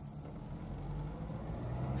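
A 1976 Mini Clubman's 998 cc A-Series four-cylinder engine, driving through its four-speed automatic gearbox, heard from inside the cabin as the car accelerates in first gear, getting gradually louder.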